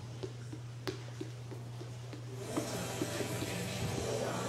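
Gym ambience during a ninja course run: a steady low hum with faint regular ticking, about three ticks a second, and one sharp click about a second in. In the second half, spectators' voices and noise swell.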